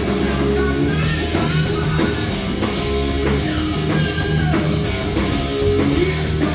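Live classic rock band playing: electric guitars, bass and drum kit, recorded on a phone in the hall. Cymbals come in about a second in.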